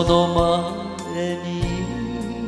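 A man's voice singing a long, wavering held note over a slow ballad backing track. About a second and a half in, the accompaniment changes.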